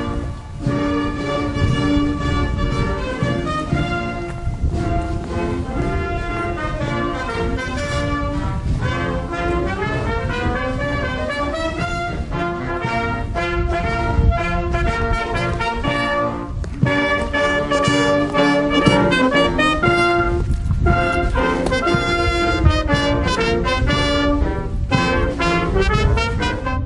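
A brass band playing, with trumpets and trombones holding and changing sustained notes.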